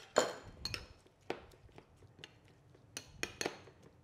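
Light clinks and knocks of a metal spoon against a ceramic bowl and kitchen worktop: a short scrape near the start, then a scatter of small, sharp ticks.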